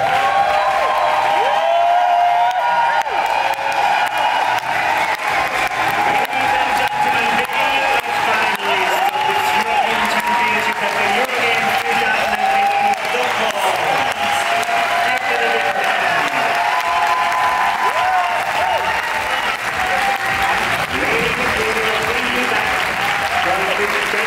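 Large audience applauding steadily, with many voices cheering and calling out over the clapping.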